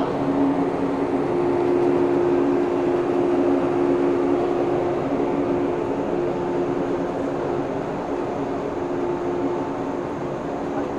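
JR West 117 series 7000-subseries electric train rolling past along the platform: a steady running hum with two held tones over the noise of the cars, easing slightly toward the end.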